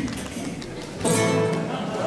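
Acoustic guitar played softly, then a full chord strummed about a second in and left ringing.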